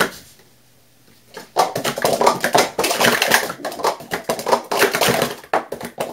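Plastic Speed Stacks cups clattering in a fast run of quick clacks as they are stacked up and down in a timed sport-stacking sequence, starting about a second and a half in. One sharp tap at the very start.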